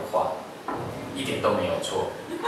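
Speech from documentary film playback: a man talking, heard through the room's speakers.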